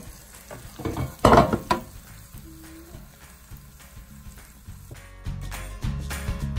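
Air fryer basket being slid out, with a loud scraping rush about a second in, then hot breaded pork chops sizzling faintly in the basket. Background music comes in near the end.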